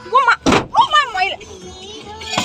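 A single sharp bang inside a car about half a second in, between stretches of a voice.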